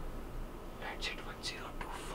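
A man whispering under his breath: a few faint, short hissing sounds with no voiced speech.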